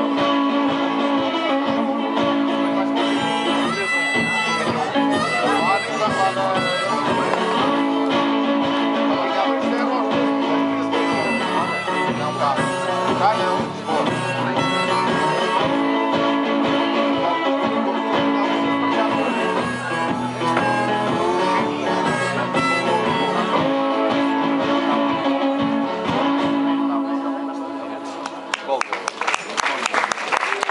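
Live folk-blues instrumental on acoustic guitar, strummed in a steady driving rhythm, with long held harmonica notes played from a neck rack. The music dies down near the end.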